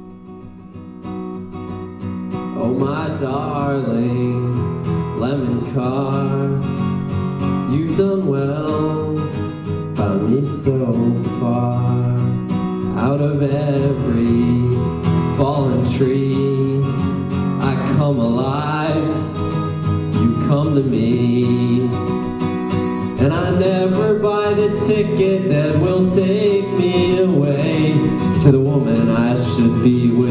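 Live solo acoustic guitar with a male voice singing over it. The guitar plays quietly alone for the first couple of seconds, and the voice comes in with long wavering held notes.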